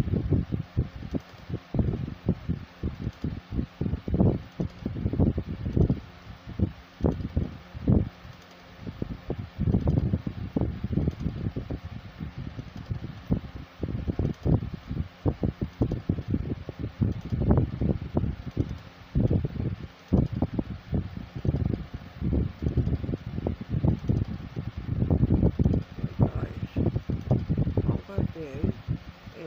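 Irregular low rumbling and buffeting on a phone microphone, coming and going every second or so, like moving air or handling noise on the mic.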